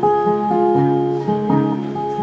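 Acoustic guitar played alone, a run of picked notes with the pitch changing several times a second.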